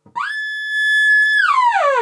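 Voltage-controlled oscillator of a 1973 Practical Electronics DIY synthesizer sounding a bright, buzzy electronic tone. It swoops up to a steady pitch, holds for about a second, then slides smoothly down in pitch near the end.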